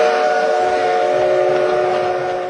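Train whistle sounding one long, steady chord of several notes at once over a hiss of running-train noise.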